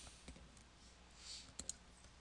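Faint computer mouse clicks against near silence, a close pair of them about three quarters of the way through.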